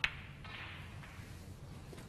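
Snooker balls colliding: one sharp click as the cue ball strikes a red, followed by a softer sound fading over the next half second as the balls roll across the cloth.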